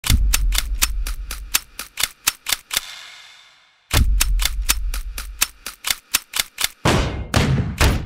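Rapid mechanical clicking sound effect, about six sharp clicks a second, in two runs each fading out, followed near the end by two short swells of noise.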